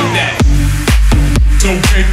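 Electronic dance music track from a DJ mix: a short falling sweep, then a deep bass line comes in about half a second in under regular, evenly spaced kick-drum hits.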